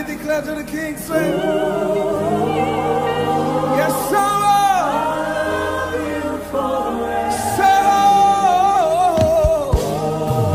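Gospel worship music: a lead voice sings long, wavering notes that slide between pitches, over held low chords that shift twice.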